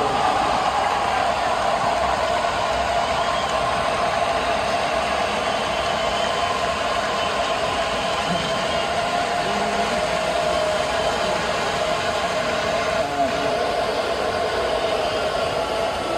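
Steady crowd hubbub: many voices at once, blended into a continuous din with no single speaker standing out.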